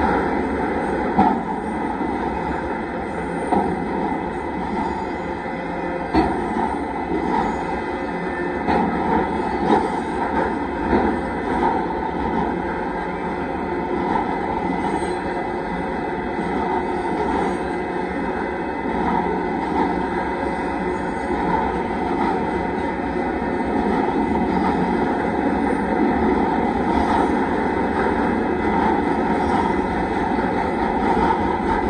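Union Pacific mixed freight train's cars rolling past at close range: a loud, steady rumble of wheels on rail, with a few irregular sharp clanks in the first half.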